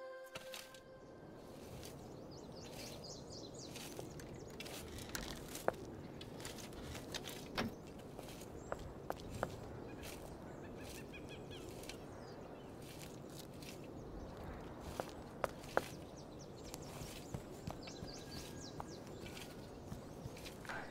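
Quiet outdoor ambience: a steady faint background with occasional bird chirps and scattered footsteps and small clicks. Soft music fades out in the first moment.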